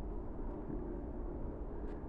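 A steady low rumble of outdoor background noise with no distinct events, and one faint click near the end.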